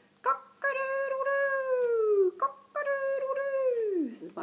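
A woman's voice imitating a rooster crowing, "cock-a-doodle-doo" twice, each crow ending in a long held note that falls in pitch.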